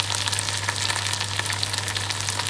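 Omena (small dried fish) and onions frying in a saucepan: a steady sizzle with scattered crackles and pops, over a steady low hum.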